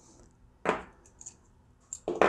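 A few faint, small clicks of the plastic check cage and rubber-faced check disc from a backflow preventer being handled and set down on a tabletop.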